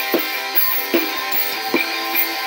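A recorded song played back from an iPod: guitar-led music with a steady drum beat.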